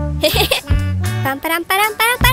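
Cheerful cartoon background music with a steady bass line, over short, high-pitched wordless cartoon vocal sounds that slide in pitch. A brief noisy sound effect comes early on.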